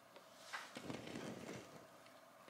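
A few faint, light clicks and taps of a plastic LEGO model being handled.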